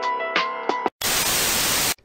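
Intro jingle: a few notes of music for about the first second, then a second of loud, even hiss like TV static that cuts off suddenly.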